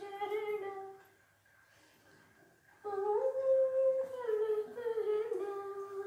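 A woman singing a devotional song to Shiva unaccompanied, in long, held, humming-like notes. She breaks off about a second in and resumes nearly two seconds later.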